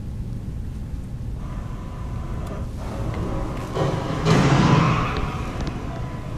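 Crash-test footage playing through a conference room's speakers: a 1959 Chevrolet Bel Air and a 2009 Chevrolet Malibu colliding in an offset head-on crash, a loud crunch of metal about four seconds in that dies away over about a second. A faint steady tone comes before it.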